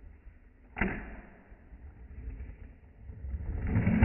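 A single sharp knock on the wooden tabletop of a fingerboard setup about a second in, followed by low rumbling handling noise that builds near the end.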